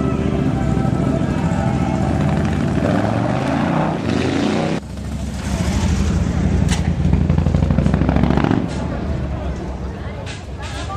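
Harley-Davidson V-twin motorcycle engines running, with a rising rev from about three seconds in that cuts off sharply near five seconds. A loud, low, steady engine sound follows and eases off near nine seconds.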